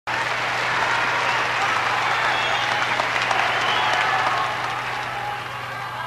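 Audience applause with voices in the crowd, dense at first and dying away over the last second or so. A steady low hum runs underneath.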